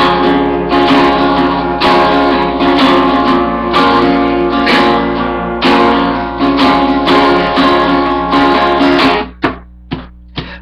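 Acoustic guitar strummed steadily in a rhythmic pattern, with a short break about nine seconds in before the strumming picks up again.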